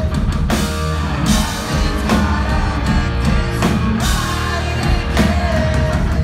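A live pop-punk band playing loudly: distorted electric guitars, bass and a pounding drum kit, with a singing voice over the top.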